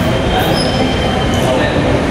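Loud, steady rumbling noise spread from deep to high pitches, with a faint hum and no breaks.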